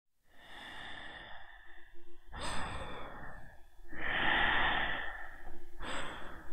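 A person breathing heavily: several long, noisy breaths in and out, each lasting about a second, coming every couple of seconds.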